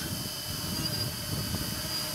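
Electric quadcopter in flight, its four motors and propellers running steadily as a buzz with a faint, high, steady whine.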